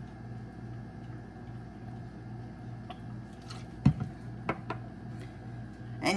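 A few light clicks and one sharper knock, just before the four-second mark, of small bottles and containers being handled and set down on a countertop, over a steady low hum.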